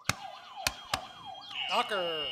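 Electronic quiz buzzers being pressed: a few sharp clicks, a warbling siren-style tone sweeping up and down, then a steady high beep starting about one and a half seconds in.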